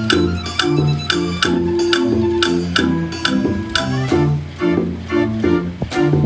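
45-key Johnny Verbeeck street organ playing a tune on its wooden pipes, with alternating bass notes and chords under the melody. Its built-in drums and woodblocks beat sharply in time, about two to three strokes a second.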